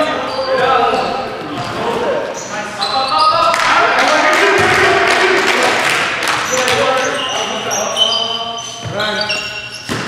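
Basketball game sounds in a gymnasium: a ball bouncing on the hardwood court and players' voices calling out, echoing in the large hall.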